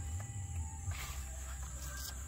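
Insects buzzing steadily in a high band, over a low steady rumble, with a few faint ticks about a second in.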